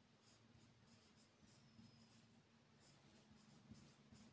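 Faint handwriting: short, irregular scratching strokes of a pen or marker on a writing surface, over a quiet room.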